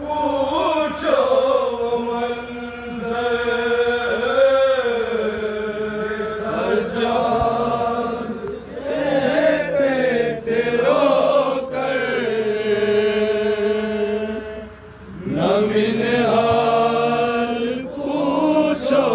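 Men's voices reciting a nauha, a Shia Muharram lament, unaccompanied, in long drawn-out notes. A brief break comes about fifteen seconds in before the chant picks up again.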